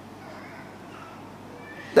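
A pause in a man's lecture speech: only faint, steady room tone and microphone hiss, with his voice starting again at the very end.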